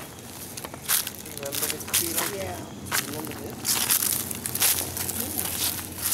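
Footsteps crunching on a dirt trail strewn with dry fallen leaves, about one step a second, with faint voices in the background.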